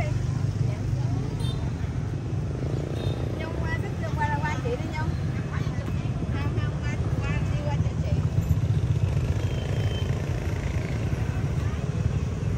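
Outdoor ambience: several people's voices chattering faintly in the background over a steady low rumble, with the voices clearest between about three and eight seconds in.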